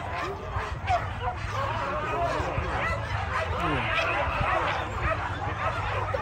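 A pack of boar-hunting dogs yelping and whining together, many short calls overlapping without pause, over a crowd talking.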